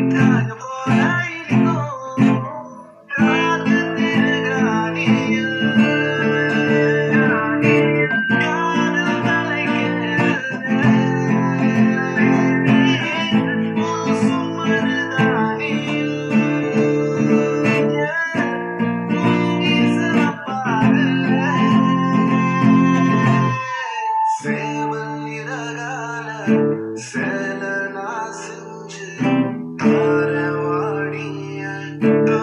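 Acoustic guitar strummed in chords, with a melody running over the chords; the playing breaks off briefly about three seconds in and again near 24 s.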